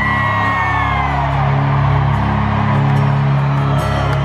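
Live rock band music with a steady low drone held underneath. A single long whoop from the crowd rises sharply at the start, holds and slowly trails off.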